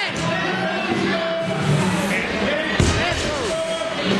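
A barbell loaded with rubber bumper plates dropped onto a concrete floor from a deadlift: one heavy thud nearly three seconds in, over people talking and background music.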